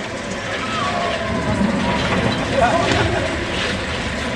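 Steel roller coaster train rumbling along its track, the rumble swelling about halfway through, with voices over it.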